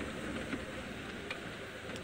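Safari vehicle driving slowly along a bumpy dirt road: steady, fairly quiet engine and road noise, with a couple of faint clicks from the vehicle.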